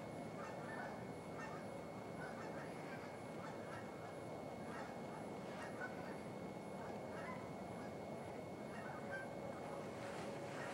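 A large distant flock of geese honking and calling continuously, many overlapping short calls.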